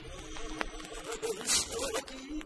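Instrumental passage of a 1960s Korean pop record: a wavering melody line with a short bright crash about one and a half seconds in.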